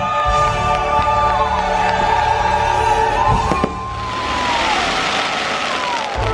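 Music from a live outdoor character stage show, with long held sung notes. Two sharp cracks come about three and a half seconds in, and then a loud hissing rush swells over the music for the last two seconds.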